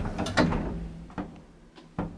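Schindler elevator door mechanism clicking and rattling a few times as the car doors come to rest open, over a faint steady low hum.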